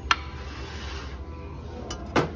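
Ornaments knocking and scraping on a store shelf as they are handled, with a sharp knock just after the start and a smaller one near the end.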